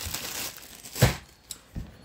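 Plastic packaging crinkling as it is handled. About a second in there is one sharp knock, followed by a couple of softer clicks.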